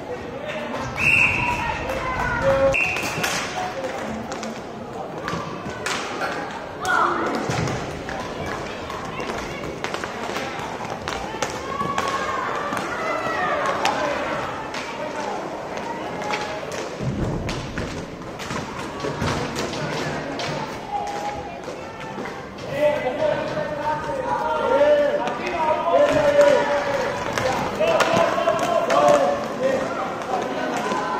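Indoor inline hockey game: spectators talking and calling out, with frequent sharp knocks and thuds of sticks, puck and skates on the plastic floor and boards, echoing in a large hall. The voices grow louder in the last several seconds as players scramble for the puck in front of the goal.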